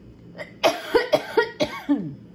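A woman coughing, about five coughs in quick succession starting about half a second in; she puts her coughing down to allergies.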